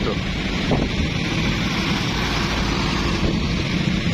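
Steady road traffic noise with wind rumbling on the microphone.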